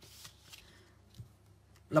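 Paper sheets rustling briefly at the start, followed by a faint low knock a little after a second in.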